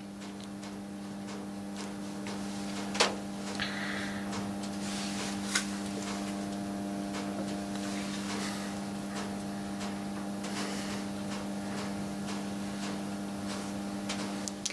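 Steady electrical mains hum from powered equipment on a meter test board running under load. There is a sharp click about three seconds in and a fainter one a couple of seconds later.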